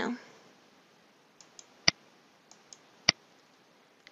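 Computer mouse button clicking twice, about a second apart, each sharp click led by a couple of faint ticks, over an otherwise quiet room.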